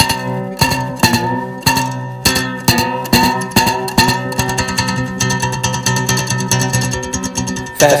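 Instrumental break on a plucked string instrument: single picked notes or chords about every half second, turning to fast, even strumming about halfway through.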